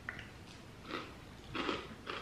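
Chewing dry chocolate cereal with marshmallows: a couple of soft crunches, about a second in and again near the end.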